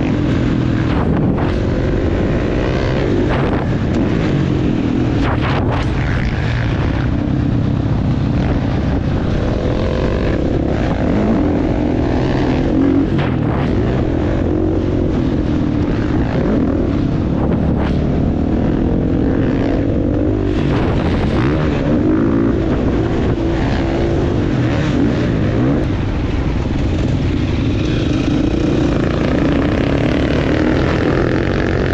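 Dirt bike engine running on a trail ride, its revs rising and falling over and over with the throttle and gear changes.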